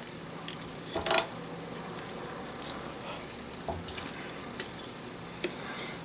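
Steel tongs and a long meat fork handling a hot roast turkey on a wire roasting rack in a metal pan: a few light clicks and scrapes, the loudest about a second in.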